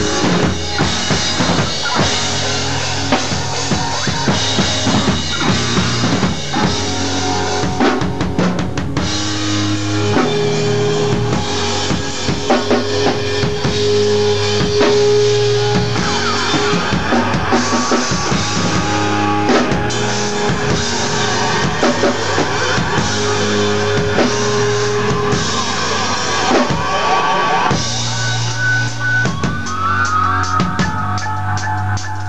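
Live rock band playing loud, with a drum kit (bass drum, snare and cymbals) driving a steady beat under electric guitar. A single note is held for several seconds in the middle, and rising guitar slides come near the end.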